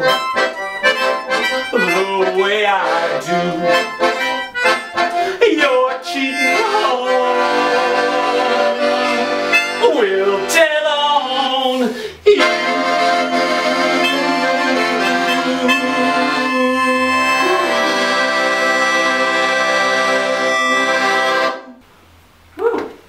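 Piano accordion and melodica playing together, building into sustained chords and ending on one long held chord that stops abruptly about a second before the end.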